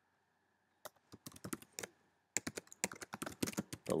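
Typing on a computer keyboard: a few scattered keystrokes about a second in, then a short pause and a quicker run of keystrokes in the second half.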